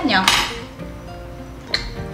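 Chopsticks clinking against the hot pot and bowls: a clatter about a third of a second in and a single sharp click near the end, over soft background music.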